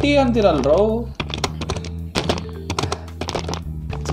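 Rapid clicking of computer keyboard typing over background music with a steady low drone. A repeated chanted vocal line runs for about the first second.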